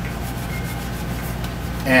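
Hands rubbing lacquer thinner into the painted surface of a rubber mask to etch the paint: a faint rubbing over a steady low background hum.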